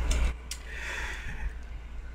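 A single click of a front-panel push button on a GW Instek GOS-6103 analog oscilloscope about half a second in, as the channel input is switched to ground, over a steady low hum.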